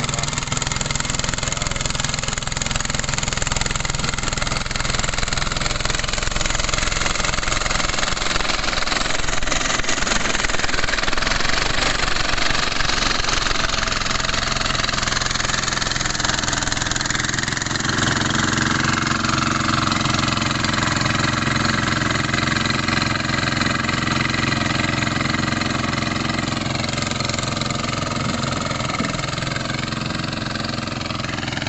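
A two-wheel walk-behind hand tractor's engine running steadily as it works through a rice field, its note shifting a little about two-thirds of the way through.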